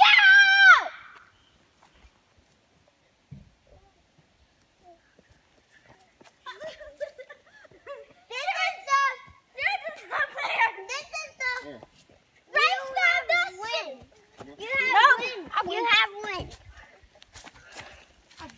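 Children's voices: one loud, high call right at the start, a few near-quiet seconds, then from about six seconds in, a long run of high-pitched calling and shouting without clear words.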